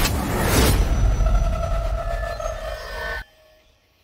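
Movie-trailer sound effects: a loud deep rumble with a whoosh in the first second, then a ringing tone over the rumble. It all cuts off abruptly into near silence about three seconds in.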